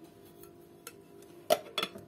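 A few light clicks and taps of kitchen containers and utensils being handled on the countertop, the two sharpest in the second half, over a faint steady hum.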